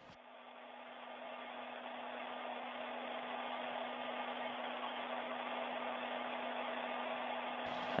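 Steady hiss of the International Space Station's cabin ventilation and equipment, with a constant low hum. It comes over the station's thin-sounding onboard audio feed and fades in over the first few seconds.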